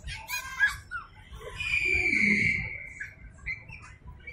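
A young child's high-pitched squeal, held for about a second and a half and falling slightly in pitch, after a few short squeaky vocal sounds.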